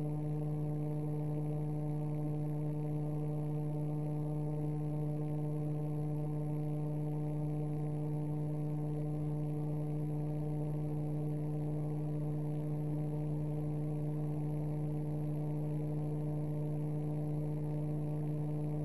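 Steady electrical hum with a row of overtones, unchanging throughout.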